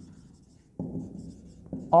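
Marker pen writing on a whiteboard: faint strokes at first, then a louder stretch of writing starting suddenly a little under a second in.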